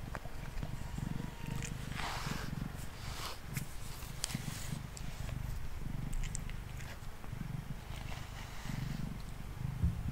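Domestic cat purring close to the microphone, a low rumble that pulses in steady breath cycles, while a pet slicker brush scratches through its fur in short strokes. A brief thump comes just before the end.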